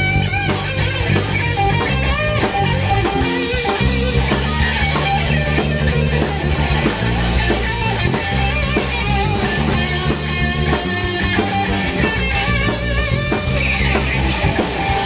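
Rock band playing live in a small room: electric guitars, bass guitar and drum kit together, with high notes wavering in pitch over the band.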